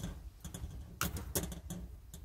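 Metal snips cutting chicken wire, with two sharp snips about a second in.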